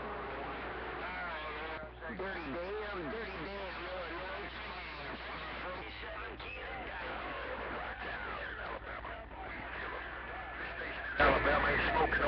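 Two-way radio receiver playing garbled, warbling voices of distant stations over a steady low hum, which the operator wants to eliminate from his setup. A louder voice comes in near the end.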